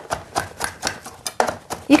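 Knife rapidly chopping fresh cilantro on a cutting board: a quick, even run of sharp taps, about six or seven a second.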